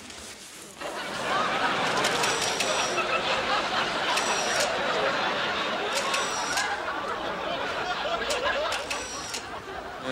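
Studio audience laughing loudly for about nine seconds, starting about a second in. A camera shutter clicks about four times through the laughter, each shot a quick double click with a thin high whine.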